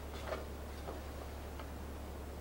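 A few faint, unevenly spaced clicks over a steady low hum.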